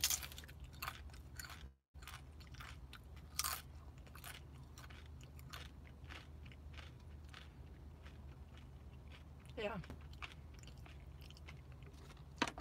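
A person chewing crunchy tortilla chips close to the microphone: irregular crisp crunches throughout, over a steady low hum. The audio drops out briefly about two seconds in.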